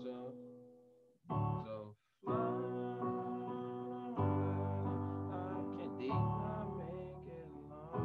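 Electronic keyboard playing an E major chord, struck several times with a short break about two seconds in, each chord ringing on and fading.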